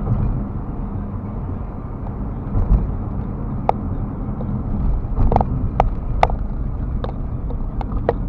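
Car driving on a city road, heard from inside the cabin: a steady low rumble of engine and tyres. Several short, sharp clicks are scattered through the second half.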